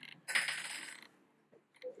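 A short metallic clatter that starts suddenly just after the start and dies away within about a second.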